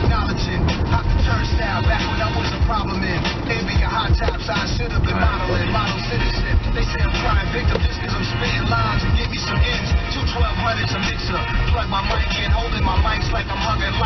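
Music with vocals and a strong bass line playing on a car stereo inside the cabin, over the car's engine and road noise.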